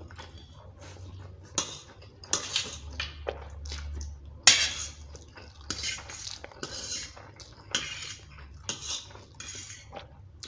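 Metal fork scraping and clinking against a stainless-steel plate as spicy instant noodles are gathered and twirled, in a string of short irregular strokes, the sharpest about halfway through, with noodles slurped in between.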